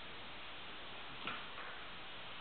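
Steady background hiss of room tone and recording noise, with one faint click about a second in.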